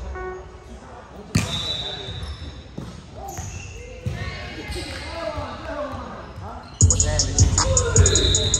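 A volleyball struck sharply about a second and a half in, echoing in the gym, and struck again about four seconds in, with players' voices in between. Music with a steady beat cuts back in suddenly near the end.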